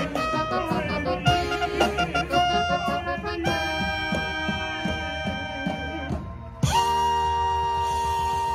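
Trumpet played close up with a show band: a run of short notes over drums, then a long held note, a short break, and a second long held note that starts about two-thirds of the way through.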